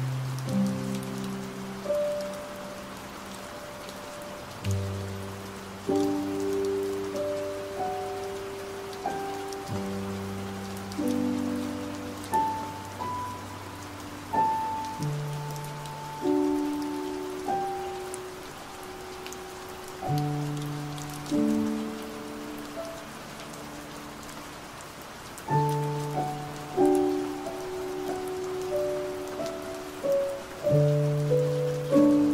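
Slow, soft piano chords, each struck and left to fade, a new chord every second or two, over a steady bed of rain noise with faint raindrop ticks.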